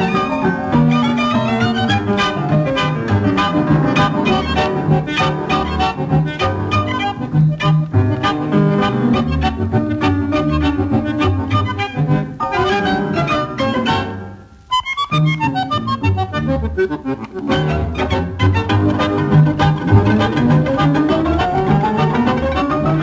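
Instrumental tango milonga played by a quintet of bandoneon, violins, double bass and piano, with a brisk steady beat and fast rising and falling runs of notes. The music breaks off for a moment about two-thirds of the way through, then comes back in, climbing in a long rising run near the end.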